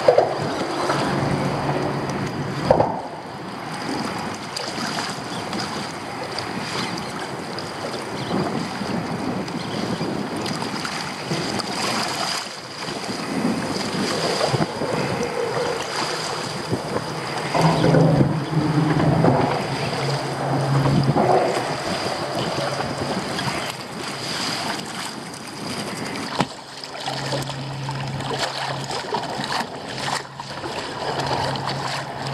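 Choppy bay water sloshing and splashing against a sit-on-top kayak's hull, with wind buffeting the microphone. A low hum comes and goes a few times.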